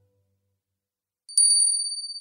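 Silence, then, a little past halfway, a small high-pitched bell struck three times in quick succession and left ringing, fading slowly.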